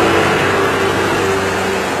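Roadside traffic noise: a vehicle engine running with a steady drone.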